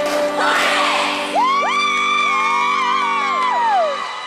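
Background music with steady held chords. Over it a crowd cheers, and from about a second and a half in several high voices hold long whoops that rise, hold and fall away near the end.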